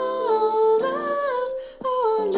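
A woman singing long held notes that step up and down in pitch, with a short break for breath near the end.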